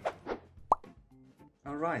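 A short editing 'plop' sound effect, a single quick rising tone about a third of the way in, with faint musical notes after it.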